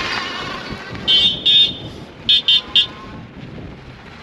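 Electric horn on an e-bike honked five times: two longer beeps, then three quick short ones, over steady riding and wind noise.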